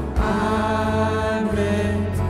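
Live worship band and singers performing a contemporary worship song, voices holding long notes over the band, with a drum hit just after the start.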